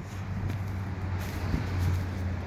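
Steady low mechanical hum under faint background noise, with a couple of soft clicks.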